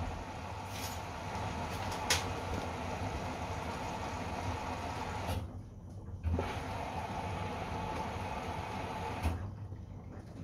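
Samsung front-loading washing machine taking in water on its delicates cycle: a steady rush of water through the inlet. The flow cuts out about five seconds in, comes back with a thump a second later, and stops near the end, with a click about two seconds in.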